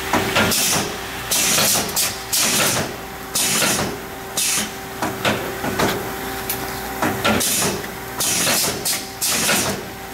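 Multi-lane bag-forming and sealing packaging machine running through its cycles: short bursts of air hiss about once a second, with mechanical knocks over a faint steady hum.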